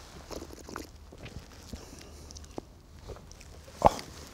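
Two men sipping and swallowing beer from tasting glasses: a scatter of soft slurps, gulps and little mouth clicks. Near the end comes one loud 'Oh'.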